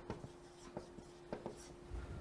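Faint writing on a board during a lecture: a few light, short ticks and strokes of the pen on the surface.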